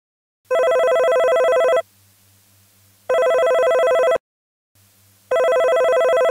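Telephone ringing with a fast trill, three rings of a little over a second each, the last cut off just after the others; the call is ringing out unanswered until an answering machine picks up.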